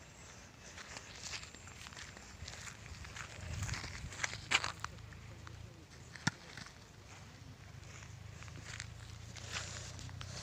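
Footsteps on dry grass and stony soil, irregular, with one sharp click about six seconds in.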